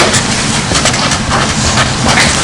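A felt-tip pen writing on paper, with scratchy irregular strokes over a steady noisy hiss.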